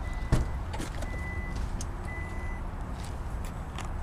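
Power liftgate of a 2008 Chrysler Town & Country unlatching with a click, then its warning chime beeping three times, about once a second, as the gate rises. A few faint clicks follow.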